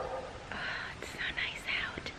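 A woman's soft whispered or breathy voice, without a clear voiced tone.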